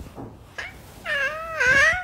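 A baby squealing happily: two high-pitched, drawn-out vocal sounds that begin about a second in, the second one louder.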